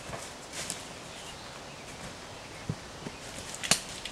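Footsteps of two people walking away over dry leaf litter and twigs on a forest floor, a scatter of light crunches with a sharper, louder snap near the end.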